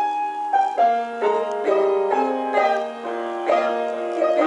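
Piano accompaniment playing an instrumental passage of a slow song, note after note with chords, with no voice over it.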